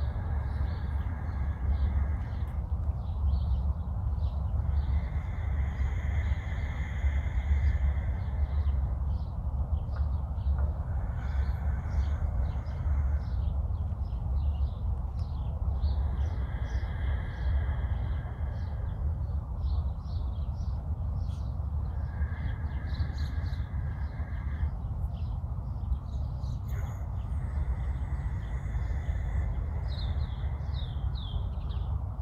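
Slow breaths drawn in and pushed out through one nostril at a time, coming and going every few seconds, over a steady wind rumble on the microphone, with birds chirping.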